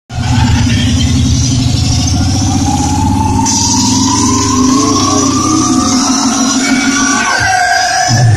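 Live hardtek (tekno) set played loud over a club sound system: a pulsing bass line under a synth tone that climbs slowly in pitch, with the bass dropping out near the end.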